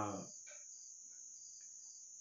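Crickets trilling, a faint, steady, high-pitched sound that never breaks. The end of a man's spoken phrase fades out in the first moment.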